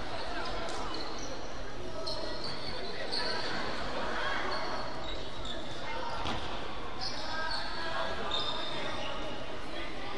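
Basketball bouncing on a hardwood gym floor, with voices echoing through a large hall and short high squeaks scattered through.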